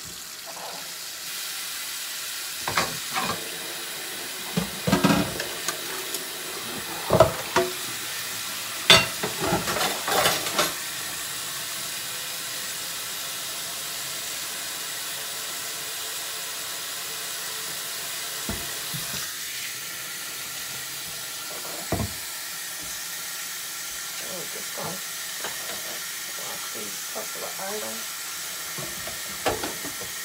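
Kitchen faucet running steadily into a stainless steel sink during dishwashing, with clinks and knocks of dishes against the sink, most of them in the first ten seconds and a few more near the end.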